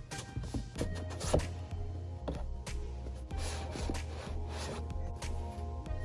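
Background music with a steady, pulsing bass line. Over it come a few short knocks and scrapes from the cardboard box being handled, the sharpest about a second and a half in.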